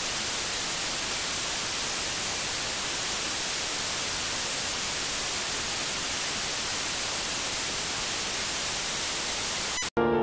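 Steady, even static hiss like white noise on the broadcast audio feed, with no speech or tones in it, cutting off suddenly just before the end.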